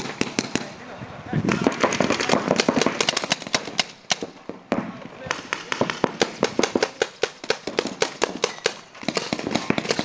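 Paintball markers firing in rapid, irregular runs of sharp pops, several a second, starting about a second and a half in with a short break around the middle.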